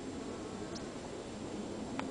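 Faint steady background hiss with no clear source, and one short faint high tick about three-quarters of a second in.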